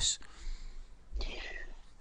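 A short pause between speakers: the end of a spoken word, then about a second in a faint, breathy whisper from a person's voice.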